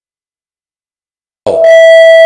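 Near silence, then about a second and a half in a loud electronic beep starts suddenly: one steady pitched tone with bright overtones, held for about a second.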